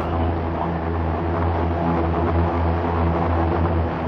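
Steady hum with a hiss above it from the electric propellers of the 44%-scale OPPAV tilt-prop test aircraft, hovering under automatic control.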